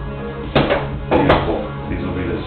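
Background music with sharp knocks: a metal mandoline slicer knocking against a cutting board. There is one knock about half a second in and two close together just after a second.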